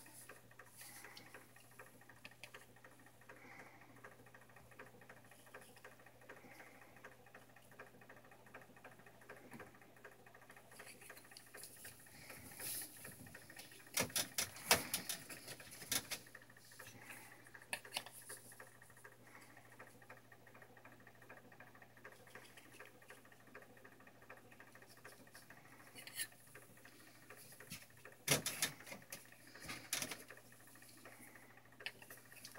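Faint, scattered clicks and rustles of eggs being handled in a plastic egg tray, with a cluster of sharper clicks about halfway through and another near the end.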